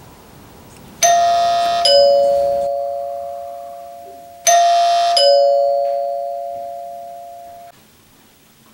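Hampton Bay wired doorbell chime sounding a two-note ding-dong twice, about a second in and again about three and a half seconds later: each time a higher tone bar is struck, then a lower one, and the lower tone rings on and fades until it stops suddenly near the end. The newly wired button, transformer and chime are working.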